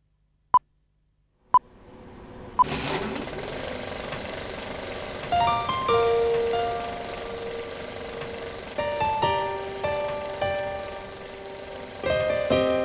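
Film-leader countdown beeps: three short, high, single-pitch beeps about a second apart, the last one joined by a swell of film-style hiss and crackle. From about five seconds in, a piano begins the song's intro with single notes over the hiss.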